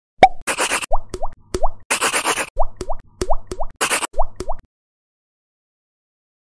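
Cartoon-style intro sound effects: a quick string of short rising 'bloop' pops, about nine, broken by three brief bursts of hiss, after an opening click. It all cuts off suddenly a little before five seconds in.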